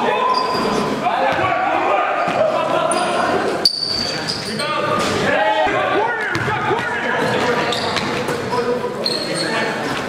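Live basketball game sound in a gym hall: the ball bouncing on the floor under a steady babble of indistinct voices, echoing in the large room. A sharp bang comes a little under four seconds in.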